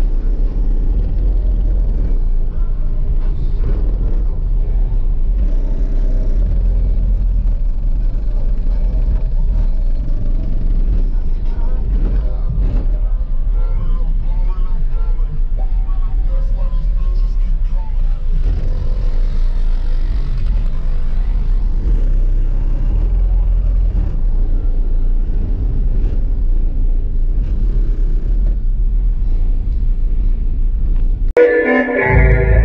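Car audio system with a single 12-inch subwoofer in the trunk playing bass-heavy music loud, the deep bass dominating and steady throughout, heard from just outside the trunk.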